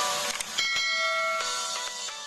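Subscribe-button animation sound effect: quick clicks and notes, then a bright bell chime about half a second in that rings on and slowly fades.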